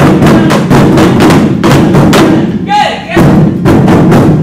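A group of taiko drums struck together with wooden sticks in a fast, steady rhythm of about four to five beats a second. A voice calls out briefly, with a falling pitch, a little under three seconds in.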